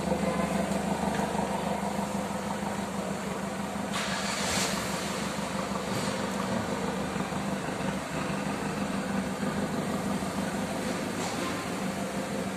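Custom Pontiac Fiero's engine idling steadily, a constant even hum, with a brief rushing hiss about four seconds in.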